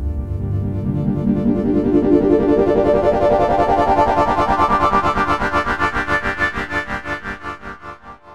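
Synthesizer outro music: a sustained chord with a fast, even pulsing that swells and then fades out near the end.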